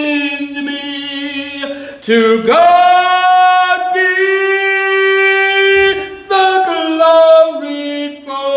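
A man singing solo, holding long notes; the melody slides up to a high held note about two and a half seconds in and steps back down near the end.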